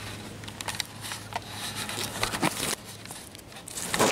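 Loose, freshly dug soil crackling and pattering as fingers break up the plug of dirt to search for a buried coin, with scattered small clicks and a rustling that grows louder toward the end.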